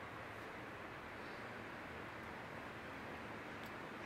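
Steady, faint hiss of background room noise, with one faint click near the end.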